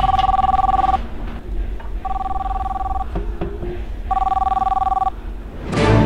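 Mobile phone ringing: a two-tone ring, about one second on and one second off, heard three times.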